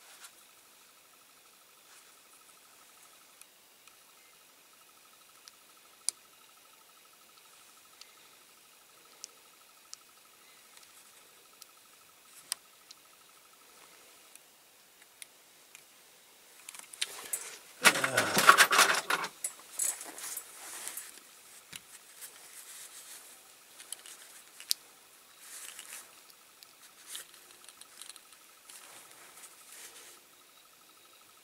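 Light clicks and small handling noises as plastic parts are pressed onto a diecast toy model on a paper towel, with a louder rustling scrape a little past halfway and smaller rustles after it. A faint steady high-pitched hum sits underneath.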